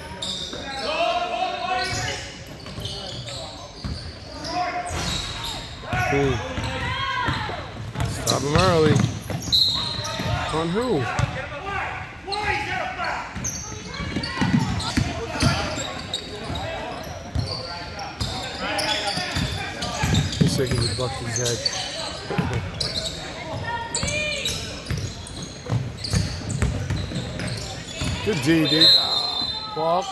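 Basketball game in a large, echoing gym hall: a basketball bouncing on the wooden court amid the calls and shouts of players and spectators.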